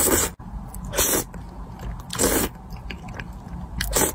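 A person slurping instant noodles in thick sauce with short, hissing slurps about once a second, with small wet chewing clicks in between.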